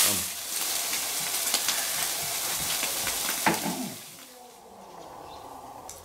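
Chopped kochia (broom plant) greens and egg sizzling in a large black wok as a spatula stirs them, with scattered clicks of the spatula against the pan. The sizzle fades out after about four seconds.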